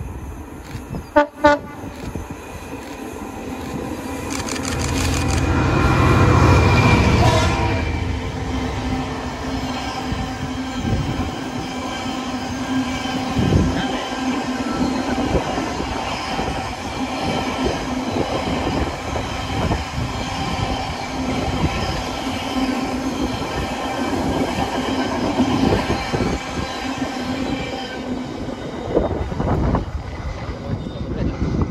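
Two short blasts on the horn of a pair of double-headed Class 66 diesel-electric freight locomotives, about a second in. The locomotives' engines then grow louder and pass at about six to seven seconds. After them a long rake of tank wagons rolls by, wheels clacking steadily over the rail joints.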